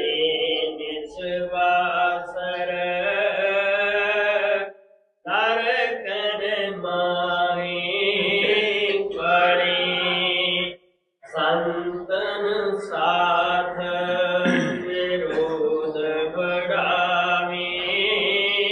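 A man chanting lines of a devotional hymn in a sung, drawn-out style. There are three long phrases, with brief breaks about five and eleven seconds in.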